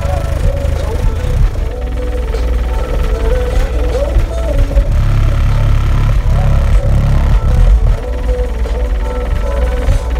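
Rap music played loud through a car audio system's two FI Audio BTL 15-inch subwoofers in a sixth-order wall, heard inside the vehicle cabin, with heavy bass that swells louder around the middle.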